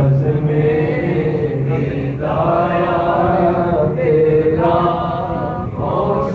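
Male voices chanting a devotional refrain in long held phrases, with fresh phrases beginning about two and about four and a half seconds in.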